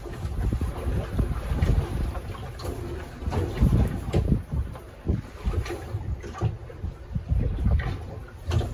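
Wind buffeting the microphone in uneven gusts on a small open boat, with scattered light knocks and rustles as a herring net is hauled in over the side.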